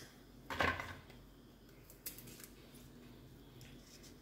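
Quiet kitchen handling sounds as green beans are picked up and cut with a small knife held in the hand: a brief rustle about half a second in, then a faint tick near two seconds.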